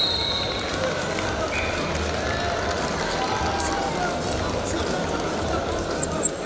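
Steady murmur of a crowd in a large arena hall, with indistinct voices in it.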